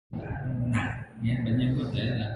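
A man speaking, his voice cutting in abruptly after a split second of dead silence.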